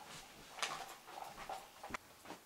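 Short dog-like whimpers and yips, mixed with the rustle and knocks of someone moving about.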